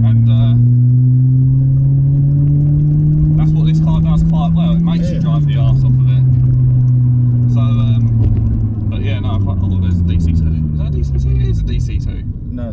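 Toyota Corolla T Sport's petrol engine heard from inside the cabin, its note climbing steadily as the car accelerates, then dropping suddenly about five seconds in as it changes up a gear. After that the revs sink slowly as the car eases off.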